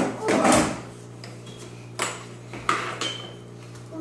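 Plastic baby walker being pushed over a tile floor, its frame and tray clattering: a loud rush of rattling noise in the first second, then separate sharp knocks about two and three seconds in.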